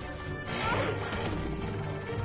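Dramatic film score under a heavy crashing impact about half a second in: the sound effect of an animated Carnotaurus being slammed to the ground in a fight.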